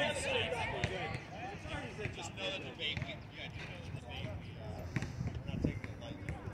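Several people talking and calling out at once, overlapping and indistinct, with a few short knocks, one about a second in and one near the end.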